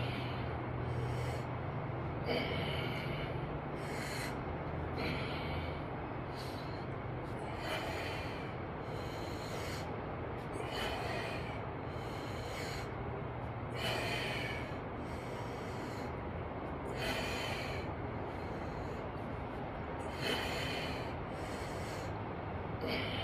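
A man breathing hard through a dumbbell set, with a short, forceful exhale roughly every three seconds, in time with his repetitions. A steady low hum runs underneath.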